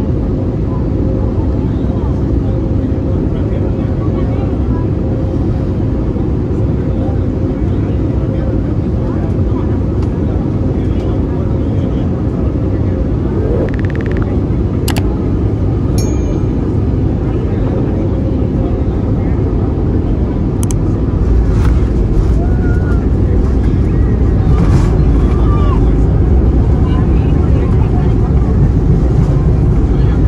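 Airbus A320neo cabin noise through landing: a steady engine and airflow rumble with a steady whine that fades out about halfway in. A few sharp clicks follow. The low rumble then grows louder about two-thirds through as the jet slows on the runway, typical of reverse thrust and braking after touchdown.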